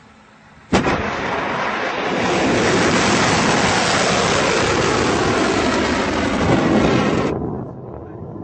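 Solid-fuel ballistic missile launching: a sharp bang at ignition about a second in, then the rocket motor's steady rushing noise, a little louder from about two seconds in, which cuts off suddenly about seven seconds in.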